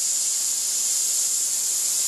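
Flameless heating element reacting with water inside an Eco Magic Cooker's heating vessel, giving a steady high hiss as the heat-producing reaction gets going.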